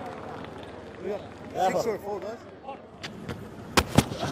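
Cricket-ground ambience of a match broadcast: faint, indistinct voices, then a few sharp knocks near the end, the last one the loudest.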